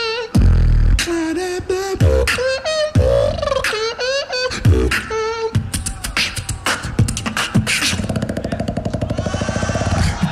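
Beatboxer performing a battle showcase: deep bass kicks and sharp snare clicks under sung, bending vocal melody lines, going into a fast, even rapid-fire rhythm in the last two seconds.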